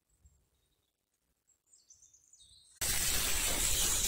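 Near silence with a few faint high chirps, then near the end a loud, steady hiss starts suddenly: a pressure sprayer's lance spraying a fine mist of fungicide onto grapevines.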